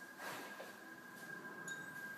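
Quiet room tone with a faint steady high-pitched whine, and a brief soft rustle about a quarter second in.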